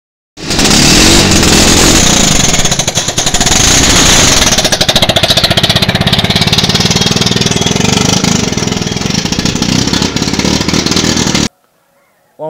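The small engine of a hand-built car running loudly close by, with a fast, even pulsing beat.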